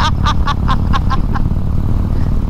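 A person laughing in a quick string of short ha-ha notes that stops about a second and a half in, over the steady low rumble of a Harley-Davidson Road King cruising on the highway.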